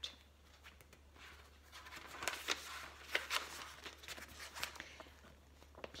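Picture book being handled and opened: faint paper rustling with a few light taps and clicks, starting about two seconds in and dying away near the end.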